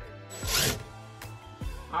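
A screw being driven by hand into the wall through a metal wall hook: one short gritty rasp about half a second in.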